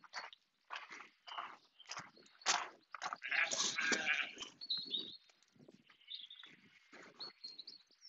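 Sheep bleating faintly several times, the loudest bleat about three and a half seconds in, with small birds chirping high in the background.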